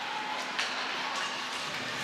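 Steady ice hockey arena ambience: a continuous wash of crowd noise with a faint hum under it, and a light knock about half a second in.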